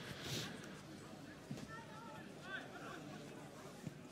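Faint ambience of a football ground: distant shouted voices from the pitch and stands, with a single soft thump near the end.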